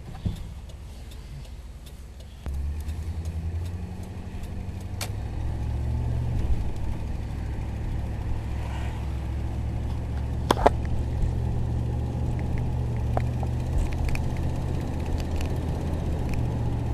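A 1991 Cadillac Brougham's V8, heard from inside the cabin, as the car pulls away from a stop and accelerates to about 30 mph. The engine note steps up about two and a half seconds in and holds as a steady low drone, with a few sharp clicks.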